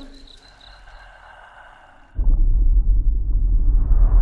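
About two seconds of quiet night ambience with faint thin steady tones, then a sudden loud, deep, muffled rumble like sound heard from under the water: horror-trailer sound design for the plunge into the pool.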